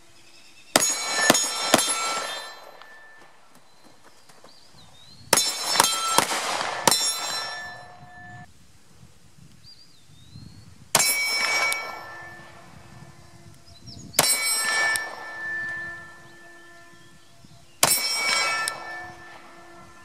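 9mm pistol rounds striking a steel silhouette target, each hit a sharp clang that rings on for a second or two. The hits start as two quick strings of three, then come singly a few seconds apart.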